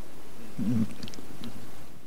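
Steady hiss of the room and PA with a brief, low murmur a little over half a second in, like a voice heard faintly away from the microphone.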